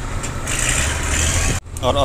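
Truck's diesel engine idling, heard inside the cab. About half a second in, a hiss starts and lasts about a second, then cuts off suddenly.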